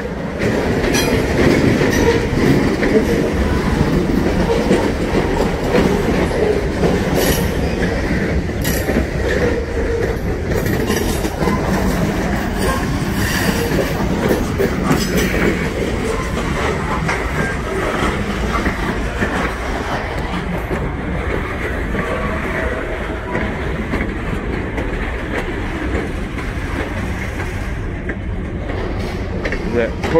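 Freight train rolling past close by: a steady low rumble with steel wheels clicking and knocking over the rails.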